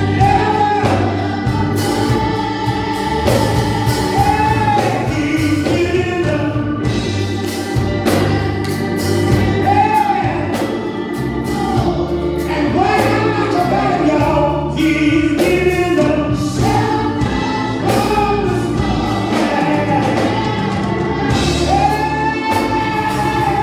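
A small gospel choir singing a gospel song with instrumental accompaniment and a steady bass line.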